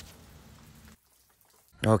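Faint, even hiss of a garden hose spraying water over a freshly poured concrete slab, wetting it to keep it hydrated while it cures; it cuts off abruptly about halfway through. A man's voice starts near the end.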